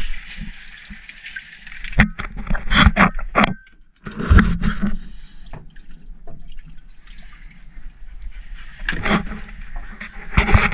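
Water splashing and trickling as a hand stirs through scooped-up grass and muck in a boat's livewell. Several sharp knocks come a couple of seconds in, and there is a louder splash just after the middle.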